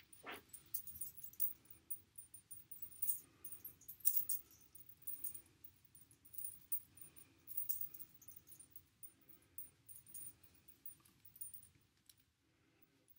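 Light, irregular rustling and crackling of hair being French-braided by hand close to the microphone, mixed with small metallic clinks from a charm bracelet on the braiding wrist. A brief falling whine sounds right at the start.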